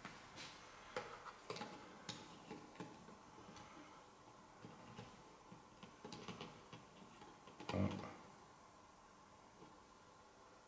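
Faint small clicks and scrapes of a caliper against a twin-choke side-draught carburettor as its bore is measured, a few scattered ticks at a time. One short, louder low sound comes near the end.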